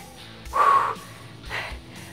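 A woman's strained, raspy exhale about half a second in, then a fainter breath near the end, from the effort of holding a plank while lifting a dumbbell. Background music runs underneath.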